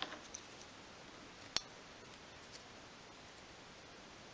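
Faint clicks and taps of a varnish brush being picked up and handled on a cutting mat, with one sharp click about one and a half seconds in.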